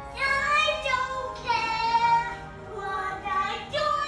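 A young girl singing a few long, high held notes that bend in pitch, in short phrases.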